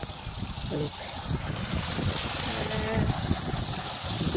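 A small stream rushing and splashing over rocks, growing louder about a second and a half in.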